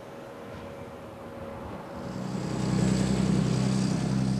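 A heavy diesel truck engine, a cab-over prime mover hauling a tipper trailer, comes in about halfway through and grows into a loud, steady low rumble. It is working under load, putting out black exhaust smoke as it pulls through a turn.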